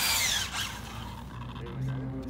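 Brushless electric motor of an Arrma Infraction RC car on an 8S system, whining at high pitch. The whine falls in pitch over the first half second as the car slows, then gets quieter.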